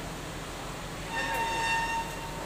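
Steady hiss and low hum of a TIG welding arc on a stainless steel pipe. About halfway through, a steady horn-like tone sounds for about a second over it, the loudest thing heard.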